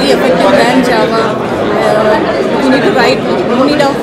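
A woman talking over the steady chatter of a crowd in a large hall.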